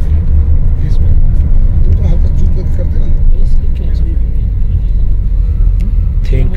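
A car driving along a mountain road, heard from inside the cabin: a steady, loud low rumble of engine and road noise.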